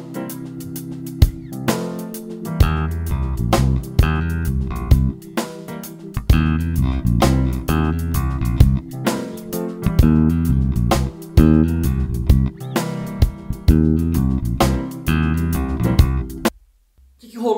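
Electric bass (Fender Jazz Bass) playing a bluesy groove over a C7 backing track with drums, the bass coming in loud about two and a half seconds in. The line slurs from E-flat up to E, a blue note leading into the chord's major third, then passes through C and B-flat, so the root C is not emphasised.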